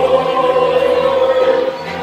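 A roomful of people singing together, holding one long note that fades away shortly before the end.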